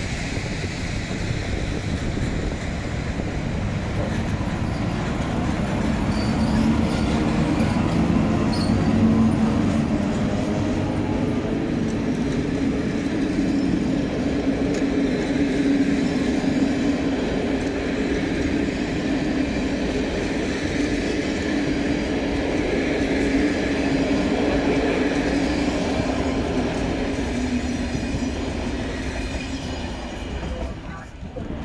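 MÁV class V43 electric locomotive (431 117) hauling a rake of passenger coaches past at close range: a steady loud rumble of wheels on rail, with a whine that rises in pitch over the first seconds.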